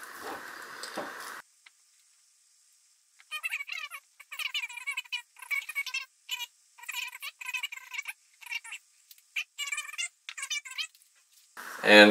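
A spatula squeaking against the inside of a glass jar while stirring sourdough starter, flour and water together: a quick run of short, wavering squeaks starting about three seconds in.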